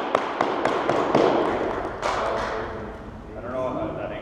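A small group clapping: quick, irregular claps echoing in a gymnasium, fading out about two and a half seconds in, with indistinct voices underneath.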